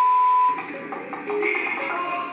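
A loud, steady single-pitch beep lasting about half a second, then upbeat background music with percussion.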